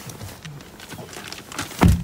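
A person climbing into a car's driver's seat: clothing and body rustle and shuffle against the seat and trim, then one heavy, low thump near the end.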